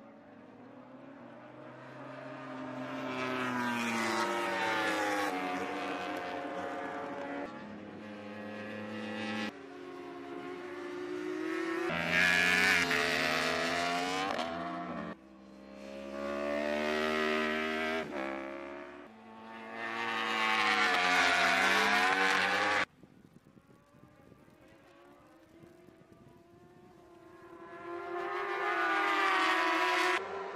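Racing motorcycles at speed, their engines revving high, the pitch climbing and dropping as they accelerate and pass. The sound breaks off abruptly several times into separate passes, with a quieter stretch about three-quarters of the way through before another bike builds up loud near the end.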